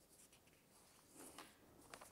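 Near silence: quiet lecture-room tone with a few faint, soft rustles about a second and a half in and again near the end.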